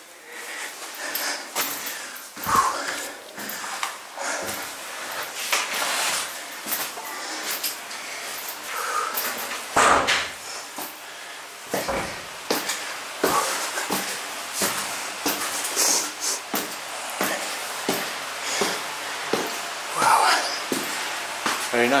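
Footsteps climbing a steep flight of indoor stairs, a step every half second to a second, with some breathing.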